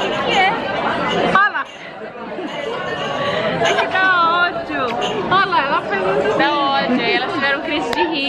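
Women's voices laughing and chattering close by, over the murmur of a busy dining room.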